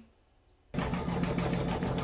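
Near silence, then about three-quarters of a second in a steady machine hum cuts in abruptly: a home embroidery machine running as it stitches out a design.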